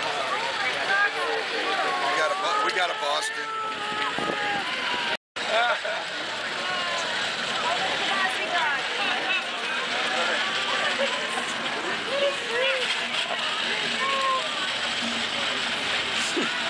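Crowd chatter: many people talking at once, with no single voice standing out. The sound cuts out completely for a moment about five seconds in.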